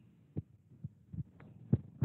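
About five soft, irregularly spaced knocks or taps, the loudest near the end, over a faint low background.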